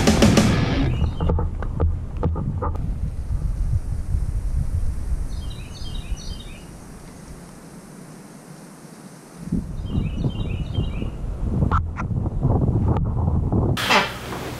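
Wind rumbling on the microphone outdoors, easing for a few seconds in the middle, with two short runs of bird chirps about five and ten seconds in and a few sharp clicks. The tail of rock music fades out in the first second.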